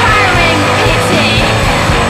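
Loud, steady grunge/post-punk rock music from a recorded band.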